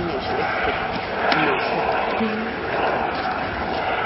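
A light helicopter flying overhead makes a steady rushing drone, with indistinct voices over it.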